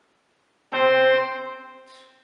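A piano struck once, less than a second in, ringing out and fading away.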